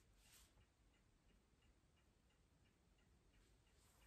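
Near silence with a faint clock ticking steadily, about two ticks a second.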